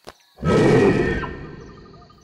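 Cartoon sound effect of a loud, rough scary sound made by the little sound bird. It starts about half a second in, hits hard at once and fades away over about a second.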